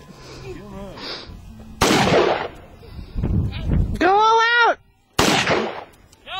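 Two shots from a Ruger SR-556 5.56 mm semi-automatic rifle, about three and a half seconds apart, each a sharp crack that dies away within about half a second.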